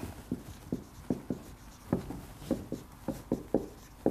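Marker pen writing on a whiteboard: about a dozen short, irregular strokes and taps as symbols are written.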